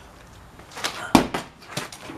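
A loud thump about a second in, with a few lighter knocks around it: a gas-swollen plastic bottle of fermenting yeast hitting the ground after being thrown, without bursting.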